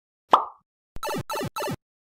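A short intro sound effect. A single pop comes first, then a click and three quick, identical notes, each sliding down in pitch.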